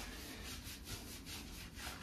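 Hands rubbing and scrubbing a Basenji's short, wet, lathered coat in quick, even strokes, about five a second.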